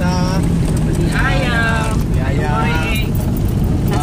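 Steady engine and road rumble inside the cabin of a moving vehicle, with a man talking loudly over it in short bursts.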